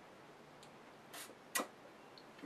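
Quiet room, then a short breath about a second in and a sharp lip smack just after: the mouth puckering after a sip of tart sour ale.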